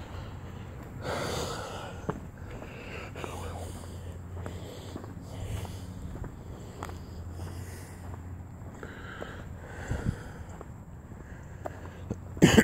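A person breathing and sniffing close to a phone microphone while walking, soft puffs of breath every few seconds with a few faint footstep clicks, over a low steady hum.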